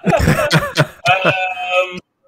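A man laughing in a few short bursts, then a drawn-out "um".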